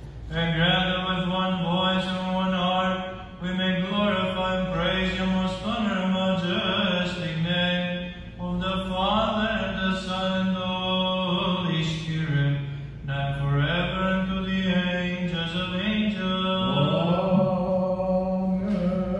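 Byzantine chant sung by a male voice: a slow hymn with long held notes that turn up and down in pitch.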